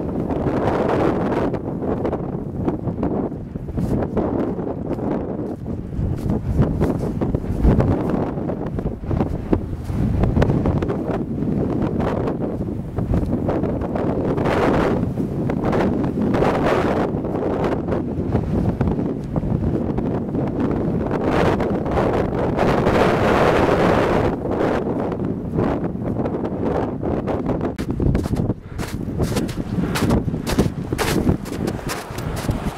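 Wind buffeting the microphone: a loud, continuous rumble that swells and eases with the gusts.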